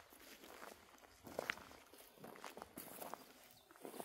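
Faint rustling and scattered soft knocks of domestic sheep shuffling and stepping about in dry grass, with a brief louder sound about a second and a half in.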